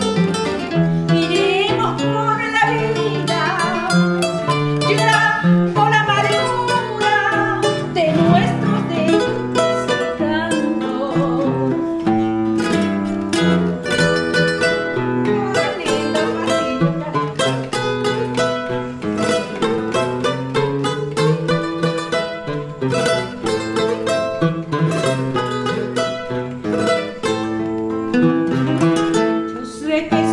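A pasillo played on requinto and Spanish guitar: the requinto picks melodic runs over the guitar's strummed and plucked accompaniment, with a woman singing over them at times.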